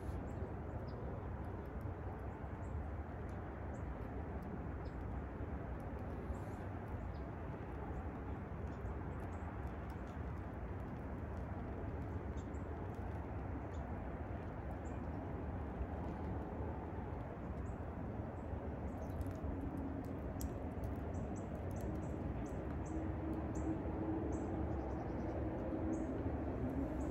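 Steady outdoor background hum and hiss. Faint, scattered short ticks and chirps come in during the second half, and a faint low drone joins near the end.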